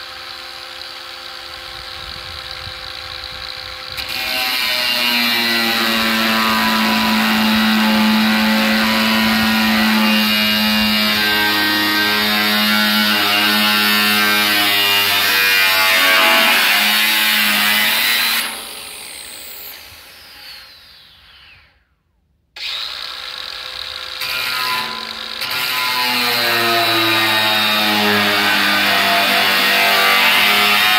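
Angle grinder cutting into the steel lid of a drum: the motor runs free at first, then the sound gets louder and harsher as the disc bites the metal from about four seconds in. About eighteen seconds in it is switched off and winds down with a falling whine, stops briefly, then starts again and cuts on through the end.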